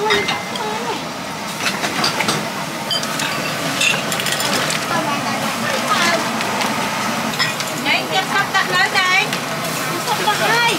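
Large stainless-steel stock pots boiling, a steady rushing noise, with scattered short clinks of a metal ladle and strainer against the pots. Voices talk in the background, most clearly near the end.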